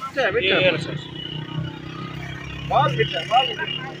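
A motor vehicle engine running steadily with a low hum, under two short bursts of people talking, one near the start and one about three seconds in.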